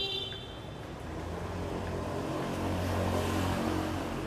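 A motor vehicle's engine passing in the street, its low hum growing louder to a peak about three seconds in. A brief high-pitched tone sounds right at the start.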